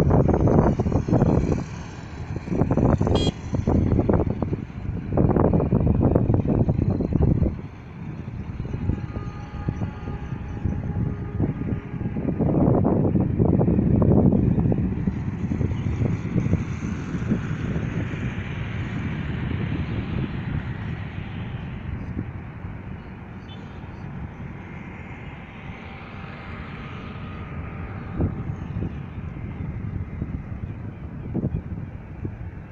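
Wind buffeting the microphone in irregular gusts, loudest in the first part, over steady traffic noise; later two passing engines swell and fade.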